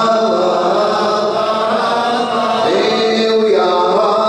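A man chanting Arabic devotional poetry in a melodic voice, holding long notes and gliding between them, amplified through a microphone.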